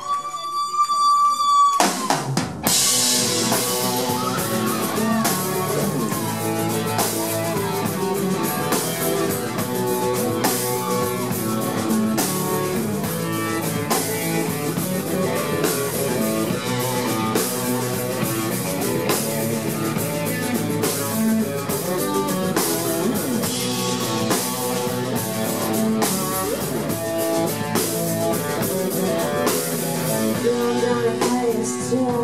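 Live rock band playing an instrumental intro on acoustic guitar, electric guitar and drum kit. A single held high note opens, and the full band with a steady drum beat comes in about two and a half seconds in.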